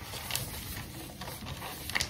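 Brown kraft wrapping paper being folded and creased by hand while wrapping a present: soft rustling and rubbing of paper, with two brief sharper crinkles, one shortly after the start and one near the end.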